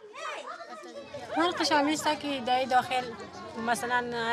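Speech only: a woman talking in Dari (Afghan Persian).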